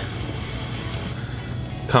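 A trimming tool shaving a leather-hard clay bowl on a spinning potter's wheel: a steady scraping hiss over the wheel's low hum, the high part of the hiss fading about halfway through. Background music plays underneath.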